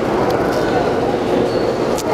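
Steady background noise with indistinct voices: a continuous hum-like haze with faint fragments of distant talk mixed in.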